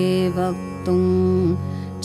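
Devotional Sanskrit hymn chanted to a melody over a steady drone, the voice holding two long notes, the second about a second in.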